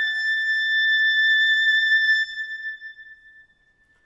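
Classical music: a single very high note from an oboe and string orchestra piece, held steadily for about two seconds, then fading away to near silence.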